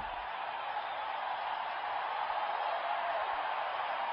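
A steady, even background hiss with no voice or other distinct sound.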